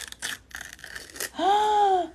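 Crinkling and crackling of a small printed paper wrapper being peeled open by hand from a Mini Brands toy, a few short crackles in the first second. Near the end a woman gives a drawn-out "ooh".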